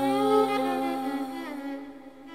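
A woman's singing voice holds one long note over a low, steady drone in a slow traditional song. A second melodic line rises briefly about half a second in, and the music thins out toward the end.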